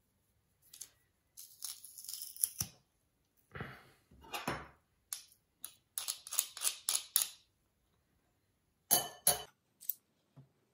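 Metal garlic press crushing garlic cloves, with clicks and short scrapes from the press and a teaspoon scraping the crushed garlic off its metal grid. There is a quick run of about six clicks partway through and two loud clicks near the end.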